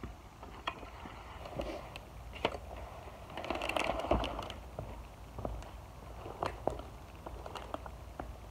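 Walk-behind broadcast spreader being pushed across grass: scattered clicks and rattles from the wheels and hopper, with a louder stretch of rustling about three and a half to four and a half seconds in.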